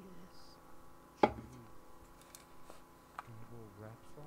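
A single sharp knock about a second in, amid faint talk.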